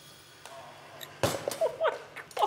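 A thrown kitchen sieve lands with a brief crash about a second in, after a near-quiet lead-in; a man's startled exclamation follows at once.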